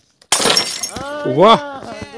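A sudden crash like something breaking, about a third of a second in and lasting about half a second, followed by a voice that rises and falls in pitch.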